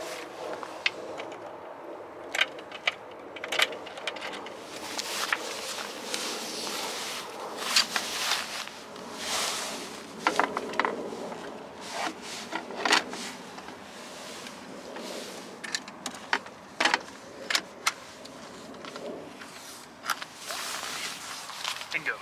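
Scattered clicks, knocks and short scrapes of hands handling an e-bike at its down-tube battery pack, plastic and metal parts knocking and sliding against the frame.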